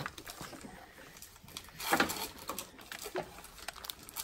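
Faint, scattered clicks and crinkles of bread being pressed by hand into a foil baking tray, with a short voice-like sound about two seconds in.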